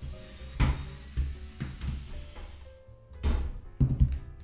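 Background music with steady notes, broken by about five sharp knocks and clunks: a cordless drill-driver and hands working against the amplifier's sheet-metal bottom cover while its screws are taken out.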